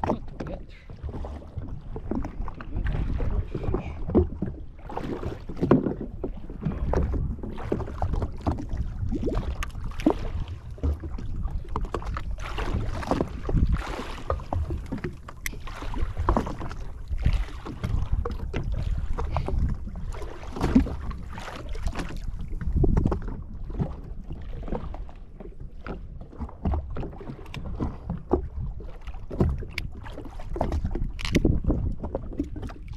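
Sea water slapping and lapping against a jetski's hull, with wind buffeting the microphone and scattered sharp knocks throughout.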